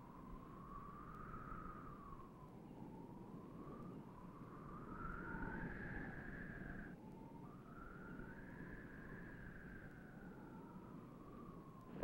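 Faint single high tone gliding slowly up and down in long, wavering arcs, like an eerie electronic or theremin-like film score, breaking off briefly about seven seconds in, over the low hiss of an old film soundtrack.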